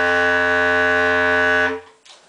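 Bass clarinet holding one long, steady note that stops near the end.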